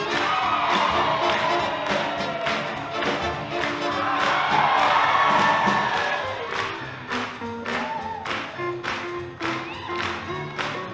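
Live swing big band playing an up-tempo tune with a steady drum beat and horns, with the crowd cheering and whooping loudly over it. The cheering is loudest about halfway through and dies down after about seven seconds, leaving mostly the band.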